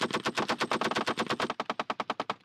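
Belt-fed machine gun firing one long continuous burst, about ten rounds a second.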